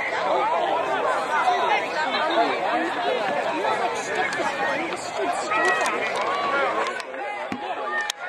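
Many people's voices chattering and calling out at once, overlapping so that no words stand out, with a few faint knocks near the end.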